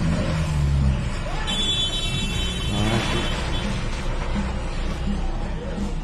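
A car engine revving up and easing off in the first second, then street traffic noise, with voices heard briefly around the middle.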